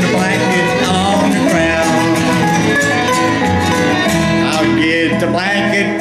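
Live country-bluegrass band playing an instrumental passage with no vocal: guitar and upright bass over a steady beat, with a higher melody line on top.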